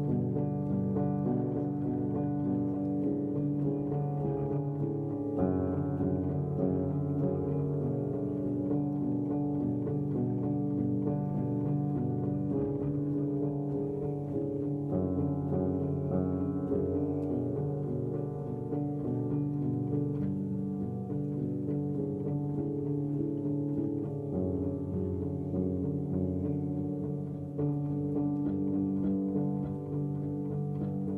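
Solo upright piano playing an instrumental passage of a slow original ballad, without singing: held chords, mostly in the low and middle register. The chords change every few seconds, with clear changes about five seconds in and again about halfway through.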